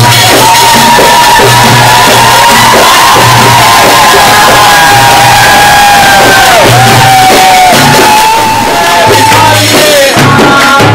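Live Turkish folk band playing loud: a davul bass drum beats a steady rhythm with frame drums, under a long held high melody note, while the crowd cheers.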